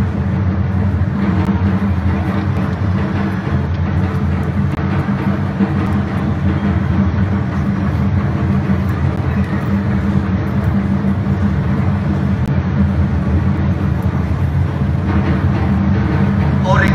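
Pipe organ playing steady, sustained low chords.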